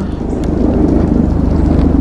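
String trimmer running steadily, its motor buzzing with a rapid fine pulse and building slightly in loudness.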